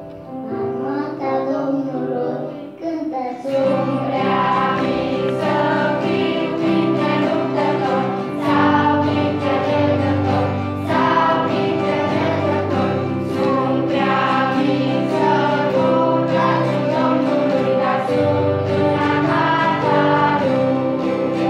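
Children's church choir singing a Christian song with guitar accompaniment. It begins thinner and fills out into full singing and playing about three and a half seconds in.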